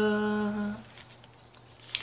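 A man's voice holding the last sung note of a hymn, stepping up in pitch once and stopping just under a second in. Near the end, the thin paper pages of a breviary rustle as they are turned.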